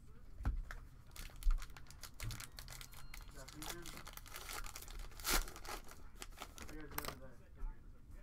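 Plastic cello wrapper of a trading-card pack crinkling and tearing as it is ripped open by hand, a dense run of sharp crackles from about a second in to about seven seconds, loudest a little past five seconds.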